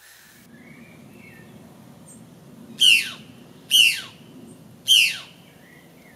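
A jay calling three times, about a second apart: loud, harsh calls that each slide steeply down in pitch. Faint chirps of other birds sound in the background.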